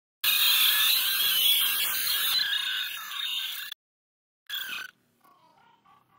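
Loud, harsh, heavily distorted noise, strongest in the upper middle, cutting in about a quarter second in and stopping suddenly near four seconds. A short burst of the same comes half a second later, then only faint sound.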